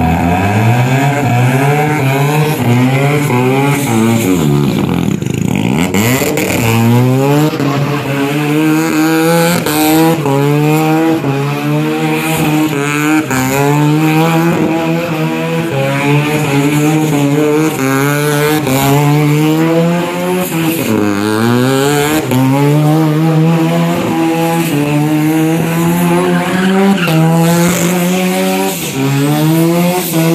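Bridgeported, turbocharged Mazda 13B rotary engine in a Toyota KE25 Corolla held at high revs through a burnout, its note pulsing up and down in a steady rhythm as the tyres spin. The revs drop and climb back a few seconds in and again about two-thirds through.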